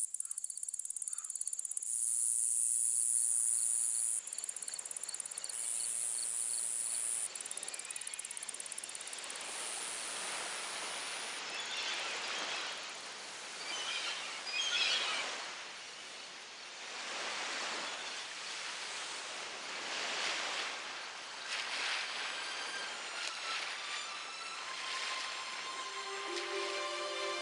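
A steady high-pitched drone fills the first ten seconds or so. Then small waves wash onto a sandy shore, the water noise rising and falling every couple of seconds.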